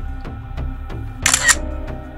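A smartphone camera shutter click sounds once, about a second and a quarter in, over background music.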